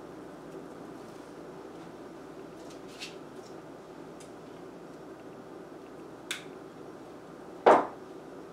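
Craft wire and small tools handled at a table: a few faint ticks, then one sharp knock near the end as something is set down on the tabletop, over a steady low room hum.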